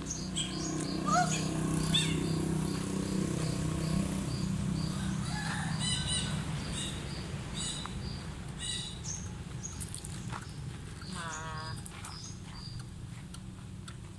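Birds chirping in many short, high, repeated notes over a steady low hum that fades after the first few seconds, with a wavering call near the end.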